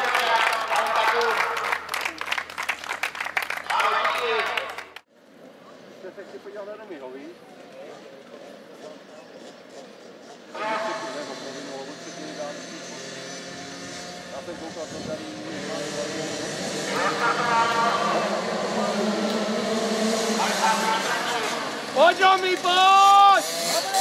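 Applause mixed with speech, then after a cut a line of 50 cc children's motocross bikes idling at the start gate. Near the end the small engines rev up hard with rising and falling pitch as the race gets under way.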